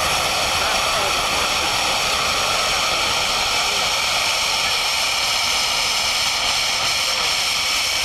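Gas flare at a discovery well burning gas, a loud steady rushing noise of gas and flame with no breaks.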